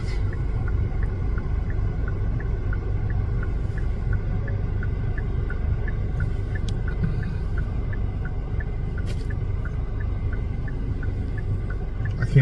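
Inside an idling car: the engine's steady low rumble with the indicator flasher clicking in an even tick-tock, two alternating pitches, about two clicks a second. A single sharp click comes about nine seconds in.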